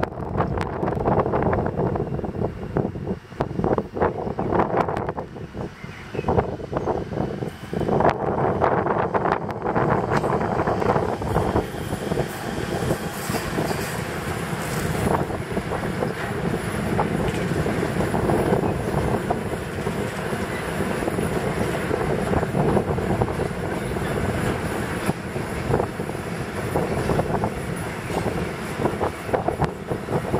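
An E94 electric locomotive with a train of freight wagons passing beneath. The wheels knock repeatedly for the first ten seconds or so, then settle into a steady rolling rumble as the wagons go by.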